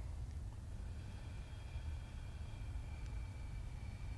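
Quiet room tone: a steady low hum, with a faint thin high tone that comes in about a second in.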